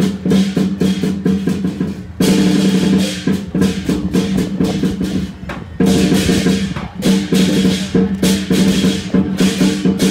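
Lion dance percussion ensemble playing loudly: a drum beaten in fast rolls with crashing cymbals over a ringing tone. The beat eases off briefly twice and comes back in hard each time.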